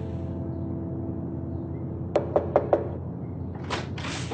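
Four quick knocks on a door, about two seconds in, then a short rustle near the end.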